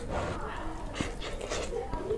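Close-miked chewing of rice and egg curry eaten by hand: wet, sticky mouth sounds and small clicks, mixed with breathy vocal noises from the mouth and throat.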